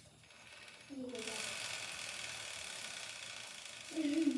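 Hand-spun motorcycle rear wheel freewheeling on its stand, its drive chain and sprocket running with a steady whir that starts about a second in.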